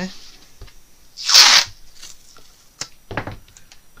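Masking tape ripped off the roll in one loud, half-second pull about a second in, then a few fainter clicks and a rustle as it is handled on the paper.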